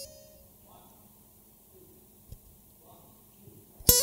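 Faint background with a few soft murmurs, then acoustic guitars start strumming loudly just before the end, opening the song's intro.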